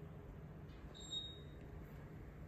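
A single short, high electronic beep about a second in, over a steady low room hum.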